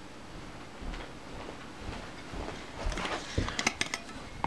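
Quiet handling noise, then near the end a quick run of sharp clicks and light taps as a metal solvent can of acetone is picked up and handled.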